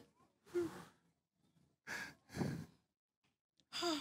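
A person sighing and breathing out heavily, about four short breaths with silence between them.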